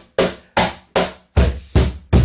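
Wooden J. Leiva cajon struck with bare hands in even, slow strokes about two and a half a second: bright, sharp slap strokes near the front panel's edge, with the last few strokes deeper and heavier.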